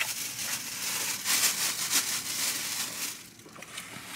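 A person chewing a mouthful of food close to the microphone: irregular soft crunching and crackling, quieter in the last second.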